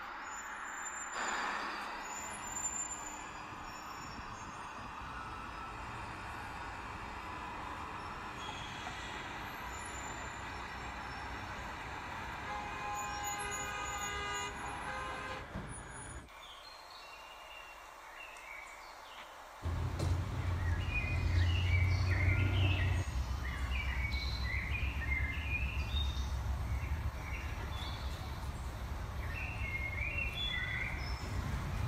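City street traffic noise with a held tone about halfway through. After a short quieter stretch, birds chirp over a low rumble for the last third.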